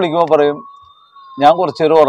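A man speaking in short phrases, with a pause of about a second in the middle. Under the speech runs a faint, long, steady high tone that slowly rises and falls in pitch.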